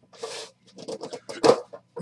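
Cardboard card boxes and packs being handled on a table: a brief rustle, then a run of light clicks and scrapes. One sharp, loud sound comes about one and a half seconds in.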